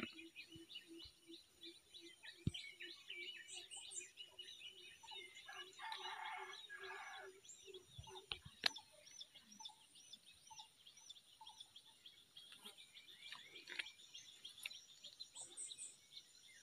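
Faint birdsong in the open: many small birds chirping in quick high calls, with a low note repeating about three times a second during the first six seconds and a brief fuller call about six seconds in.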